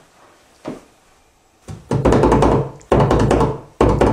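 A drum roll beaten by hand on a wooden box: after a quiet start and a single tap, rapid hand strikes on the wood come in three loud runs, starting a little under two seconds in.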